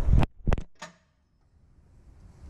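A few short knocks within the first second, then near silence.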